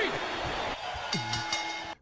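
Produced podcast segment sound drop: an echoing wash, then a low held tone that drops in pitch and holds, with faint higher ringing lines, cutting off suddenly near the end.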